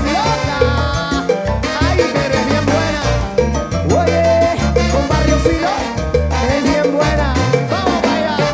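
Live salsa band playing at full volume through an instrumental stretch with no sung lyrics, carried by a strong bass line and percussion.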